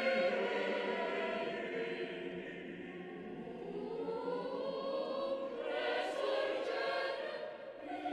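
Background choral music: a choir singing slow, sustained chords.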